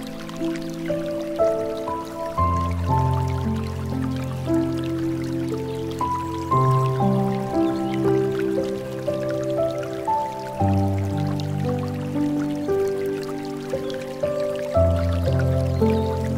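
Slow, gentle piano music with held low chords that change about every four seconds, over a faint trickle and drip of flowing water.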